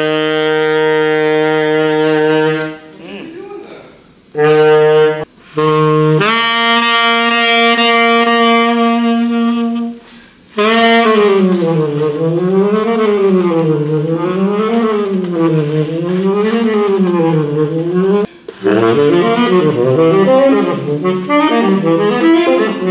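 Unaccompanied tenor saxophone: long held low notes broken by short gaps, then a note that swings slowly up and down in pitch, then a run of quick notes near the end.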